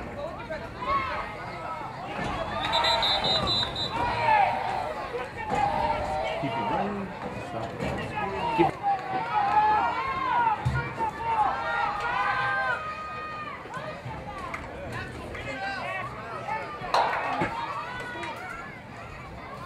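Several voices of coaches and spectators shouting and calling out over a youth football field, overlapping and without clear words.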